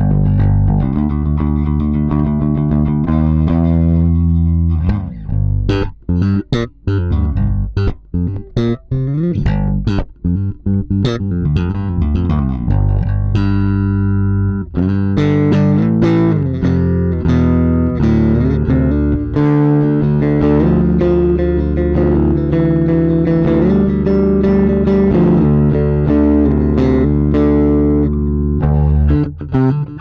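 Squier 40th Anniversary Gold Edition Jazz Bass, a four-string electric bass with two single-coil jazz pickups, played fingerstyle through a Blackstar Unity U250 bass amp and heard from the amp's line out. It plays a solo bass line. Sustained notes give way to a stretch of short, clipped notes with brief gaps in the middle, then fuller, continuous playing.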